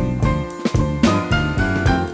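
Electric blues band recording in an instrumental passage with no vocals: stacked chords over a strong bass line, punctuated by repeated drum hits.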